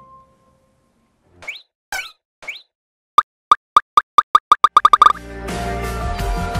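Editing sound effect: three quick rising chirps, then a run of about a dozen sharp pops that come faster and closer together. New music starts near the end.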